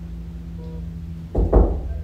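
A steady low hum with faint held tones, then a loud dull thump about a second and a half in.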